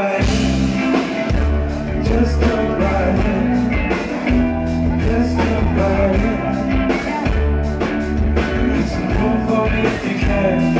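Live band playing a rock-soul song: drum kit, keyboards and a heavy bass line, with a male lead singer on vocals. The music is loud and continuous.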